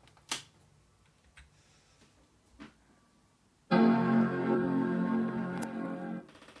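A sharp click, then about three and a half seconds in, a Mac-style startup chime: one loud sustained chord lasting about two seconds, played by the paper iMac G5's built-in electronics as it boots. It is much louder than the earlier version's chime.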